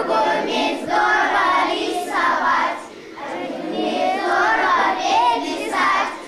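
A class of young schoolchildren singing together in unison, in short phrases with a brief pause about three seconds in.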